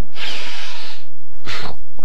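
Loud sniffing through the nose: one long sniff, then a shorter one about a second and a half in.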